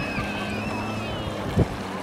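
Jet ski engine running steadily as the craft rides through choppy water, a low even hum over the wash of spray and waves. One brief sharp thump about one and a half seconds in.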